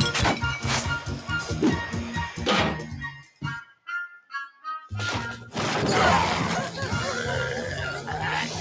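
Opening theme music of an animated cartoon, with crashes and thumps in the mix. The full band drops out about three seconds in, leaving a few light high notes, and comes back in about five seconds in.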